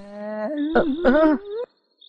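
A long, wordless vocal sound from one voice: it holds one pitch at first, then rises and wavers up and down, and cuts off suddenly shortly before the end.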